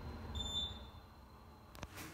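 Otis hydraulic elevator car arriving at a floor: a single short electronic beep from the car's arrival signal about half a second in, while the low rumble of the car's travel fades away as it stops. A sharp click comes near the end, just before the doors open.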